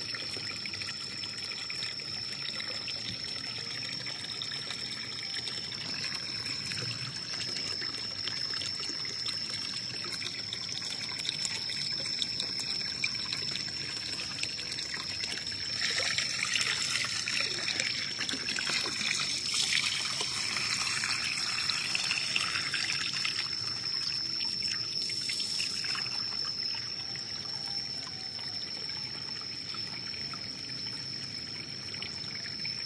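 Water trickling and pouring steadily into a small cement pond as it is topped up, louder for a stretch in the middle.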